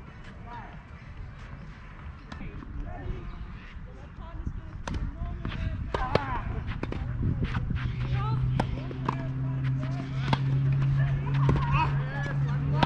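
Tennis rally: racket strings striking the ball several times, sharp pops a second or more apart, mostly in the second half, with faint voices. About seven seconds in, a steady low hum comes in and holds.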